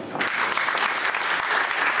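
Seated audience applauding with steady hand-clapping, which starts just after the beginning.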